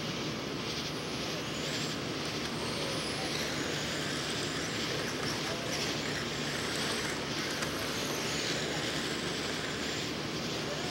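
Electric RC dirt-oval late-model cars running laps, their 17.5-turn brushless motors whining faintly and gliding up and down in pitch as they pass, over a steady wash of noise.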